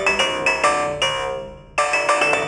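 SEELE Abacus software synth playing its 'MicroTonal Perc' patch: a quick run of mallet-like, bell-like pitched notes, about six a second, made dirty and FM-like by automated waveshaping. About a second in the notes stop and the last one dies away, then a new run starts near the end.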